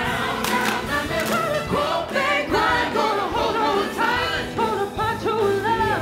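A woman singing lead in a soul-style musical theatre number, backed by ensemble voices and a band.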